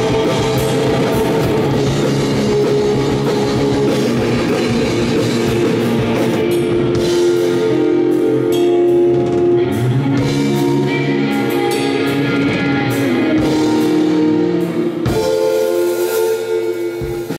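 Live rock band playing loud: electric guitars and a drum kit, recorded from the audience in a club.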